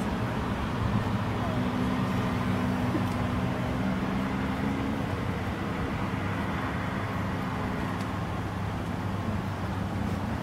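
A steady low engine hum that holds at an even level throughout, over a faint haze of outdoor background noise.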